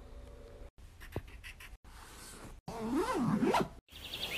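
Felt-tip marker scratching and squeaking on paper in a few short cut-together snippets. The squeaks waver up and down in pitch and are loudest near the end.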